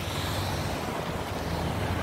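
Steady outdoor background noise: wind on the microphone over a low, even rumble.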